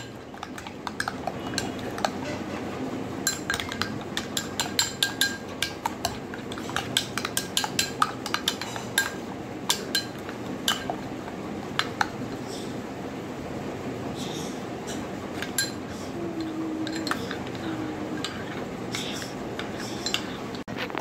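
A metal spoon stirring a thick, wet spice paste in a ceramic bowl: a steady scraping with frequent irregular clinks of metal against china.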